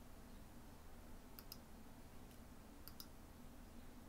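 Near silence with faint computer mouse clicks: two quick double-clicks about a second and a half apart.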